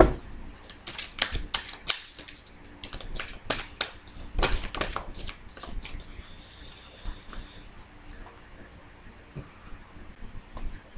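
Tarot cards being handled: a run of sharp clicks and snaps over the first six seconds, then a short high rasp and a few fainter clicks.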